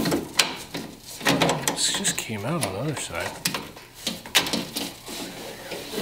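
Vise-grip locking pliers working a stuck screw out of a steel door, giving several sharp metal clicks and scrapes; a man's voice mutters between them.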